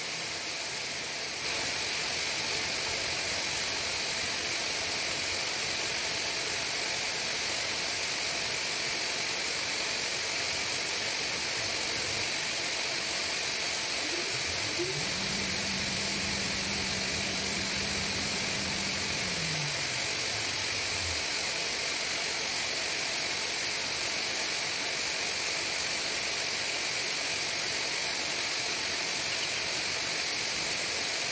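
A steady dense hiss from a poultry house full of broiler chicks, thousands of chicks peeping together over the ventilation, getting slightly louder just after the start. A low hum joins about halfway through, drops in pitch in steps and stops a few seconds later.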